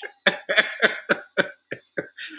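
A man laughing in a run of short breathy bursts, about four a second.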